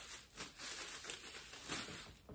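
Bubble wrap crinkling and rustling in irregular faint crackles as it is pulled by hand off a round object.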